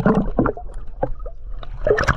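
Water sloshing and gurgling against a GoPro camera held at the sea surface as it dips in and out, with many small bubbly pops and clicks; the sloshing is loudest at the start and again just before the end.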